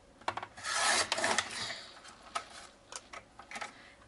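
Blade head of a Fiskars sliding paper trimmer drawn along its rail, cutting through a sheet of cardstock: a scraping hiss about a second long, with a few light clicks before and after.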